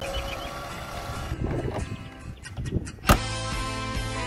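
Background music for an intro montage, with some noisy sound under it for the first three seconds. A sharp hit lands about three seconds in, and steady music follows.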